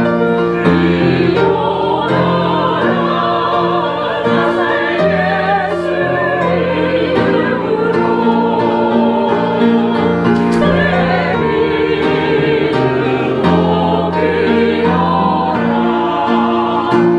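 Small mixed church choir singing with upright piano accompaniment, sustained chords moving steadily from one to the next.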